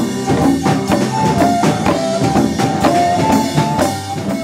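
Traditional Indonesian ensemble music: rope-laced hand drums (kendang) beaten in a busy rhythm under a melody of long held notes that steps between a few pitches.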